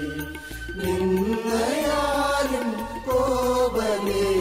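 Mixed choir of men and women singing a Malayalam Christian devotional hymn together in long held notes that glide from pitch to pitch.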